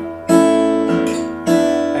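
Steel-string acoustic guitar, fingerpicked: two chords plucked about a second apart, each left ringing. They are the E6 to E7 walk-up that closes the verse.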